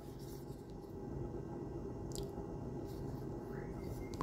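Quiet room noise with a single faint click about two seconds in, from handling an open folding knife.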